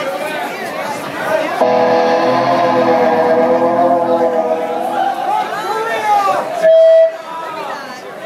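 An electric guitar chord is struck about a second and a half in and rings out for a few seconds over crowd chatter. Near the end a short, loud, steady tone sounds briefly and cuts off.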